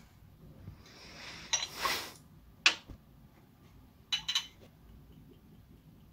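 A short pour of liquor into a glass blender jar, then a sharp knock and two quick glassy clinks as the bottles and shot measure are handled.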